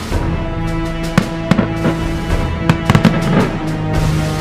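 Fireworks display going off: a string of sharp bangs and crackles, irregularly spaced, over loud music with long held notes.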